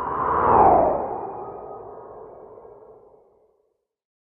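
Logo-sting whoosh sound effect with a ringing echo: it swells to a peak about half a second in with a falling sweep in pitch, then fades out, gone before the end.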